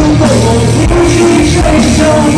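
A rock band playing live and loud, with electric guitar, bass and drums, heard from the audience.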